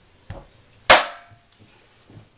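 A soft knock, then about a second in a single loud, sharp bang that rings briefly as it dies away.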